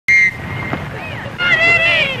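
Children's high-pitched shouts and calls while they play: one short shrill cry at the very start, then a longer high call from about one and a half seconds in.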